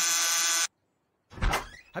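Cartoon door buzzer giving one steady, even buzz lasting under a second, followed about a second and a half in by a single short thump.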